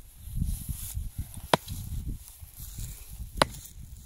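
Two sharp blows of a hand tool on the wooden fence boards, almost two seconds apart, over a low rumbling noise.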